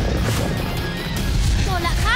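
Cartoon action sound effects over background music: a low rumble of rock spikes bursting from the ground, with short gliding sounds near the end.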